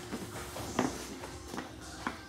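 A few soft footsteps and shuffles as people stand and walk across a floor, over faint background music.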